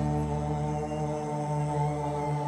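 Live band music in a slow introduction: a steady drone of held notes that does not change pitch.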